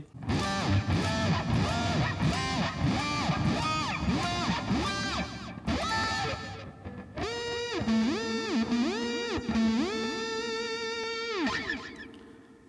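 Electric guitar played through a Digitech RP55 multi-effects unit with its whammy pitch-shift effect swept by an expression pedal. Picked notes give way, about seven seconds in, to repeated smooth swoops up in pitch and back down, ending with a fade just before the end.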